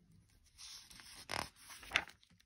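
A paper page of a picture book being turned: a dry rustle of paper over about a second and a half, with a louder swish about halfway through and a short sharp sound near the end.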